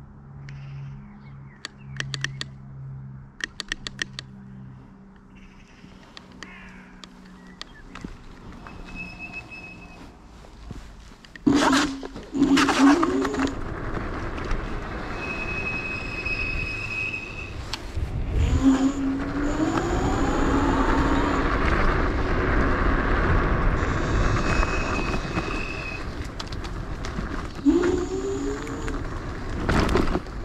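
Dualtron Thunder electric scooter ride: quiet at first, with a low hum and a few sharp clicks. From about eleven seconds in, loud wind rush on the camera and road noise set in as it gets up to speed, with a whine that rises in pitch several times as it accelerates.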